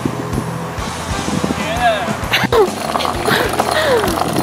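Background music with a steady beat, with sliding, wavering voice-like calls about halfway through and again near the end.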